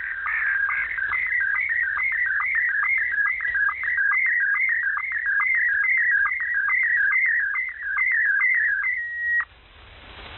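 A warbling electronic tone, a rapid chirp repeating about three times a second, ends in a short held note and cuts off abruptly near the end. It is heard through a shortwave receiver in upper sideband, with its narrow, tinny passband.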